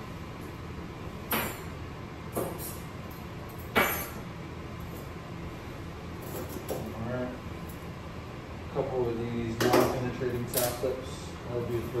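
Metal surgical instruments set down on a draped instrument table: a few sharp clinks, three in the first four seconds and two more near the end, mixed with a man's speech in the second half.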